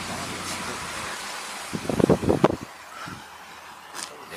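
A car moving slowly, heard from inside the cabin as a steady hum of engine and road noise, with a brief cluster of short sounds about two seconds in.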